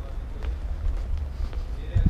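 Low steady outdoor rumble picked up by a handheld camera microphone while walking, with no clear event standing out.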